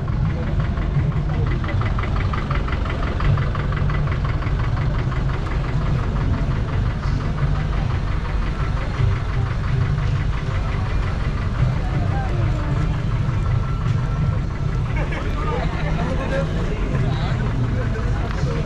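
A steadily running engine with a low hum and a fast, even beat, under crowd voices.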